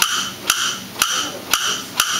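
A theatre pipe organ's wood block effect, struck about twice a second in an even rhythm, each knock with a short hollow ring.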